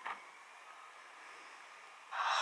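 Pioneer BDR-XD05 external optical drive spinning up a DVD to start playback: a faint, steady noise.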